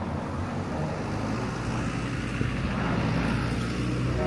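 Road traffic noise: a car going by, a steady noise with a low rumble that swells a little in the second half.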